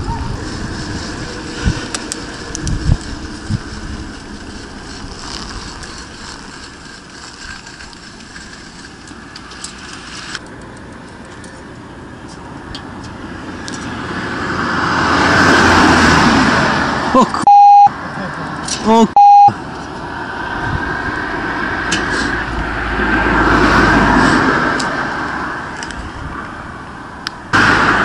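Road and wind noise while cycling, then two cars passing on the road, each swelling up and fading away. Between them come two short electronic beeps about two seconds apart.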